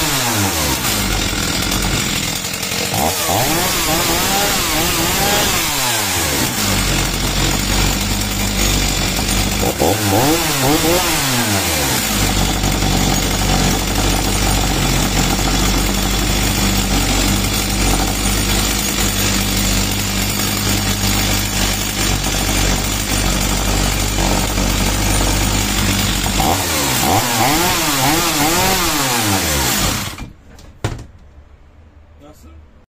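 Stihl MS 290 chainsaw's two-stroke engine running after a full rebuild, revved up and back down several times in the first dozen seconds and again near the end, idling steadily in between.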